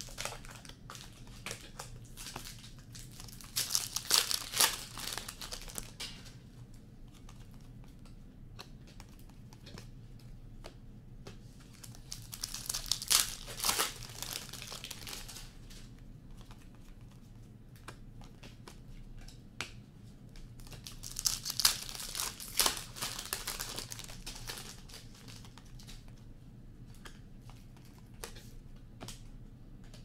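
Foil wrappers of hockey card packs crinkling and tearing in three loud bursts, with light clicks of cards being flicked and sorted in between.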